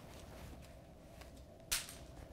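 One short, sharp click near the end, over faint room tone.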